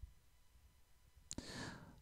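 Near silence, then about a second and a half in a single click and a short, soft breath in.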